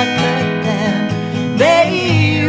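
Two acoustic guitars strummed with a woman singing a folk song; a man's voice comes in with her near the end.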